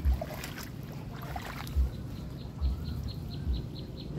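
Low thumps and handling noise on the microphone, about four of them, as a fishing rod is worked into shallow marsh water among reeds. About two-thirds of the way in, a high chirp starts repeating evenly, about four times a second, typical of an insect.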